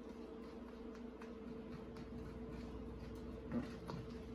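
Faint clicks and scrapes of a metal fork stirring scrambled eggs in a paper bowl, over a steady low hum.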